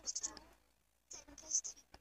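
A faint voice muttering in two short, soft bursts about a second apart.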